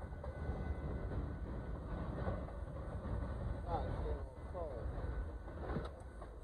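Union Pacific mixed freight train rolling past, a steady low rumble.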